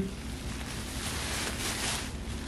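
Thin plastic shopping bag rustling and crinkling as a pack of diapers is pulled out of it.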